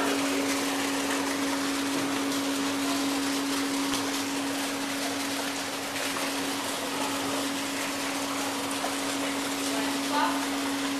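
Steady machine hum with one constant low tone over an even hiss, typical of an aquarium tank's water pump and filtration running.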